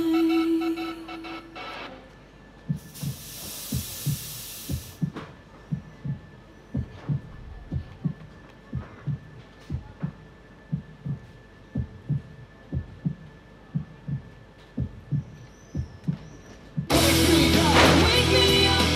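A heartbeat sound effect over the stage speakers: steady paired low thumps, lub-dub. It follows the end of the music a moment earlier. About three seconds in, a fog machine gives a two-second hiss, and loud rock music cuts back in near the end.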